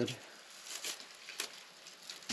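Dry grass and dead leaves rustling and crackling as they are handled, with a few sharper crackles about a second in.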